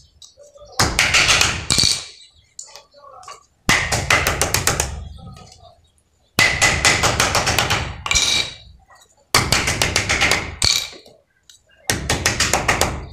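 Quick runs of hammer blows on the laminated iron core of a ceiling-fan stator, braced against a wooden board. There are about five bursts of rapid strikes with short pauses between, and each strike has a metallic ring.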